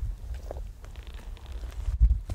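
Low, uneven rumble on the microphone, with a few faint scuffs over it.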